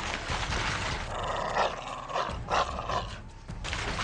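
Dog-like growling and barking, loudest in two bursts in the middle, over background music.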